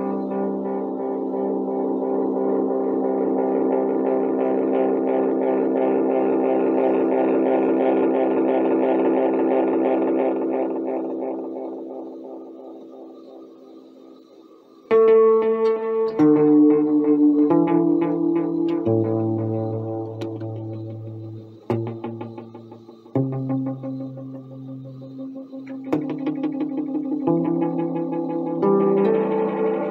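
Electric guitar played through an Elk EM-4 tape echo, with the tape repeats trailing each note. A held chord rings out and its echoes fade away over about fourteen seconds, then a new run of notes with some low bass notes starts suddenly and loudly.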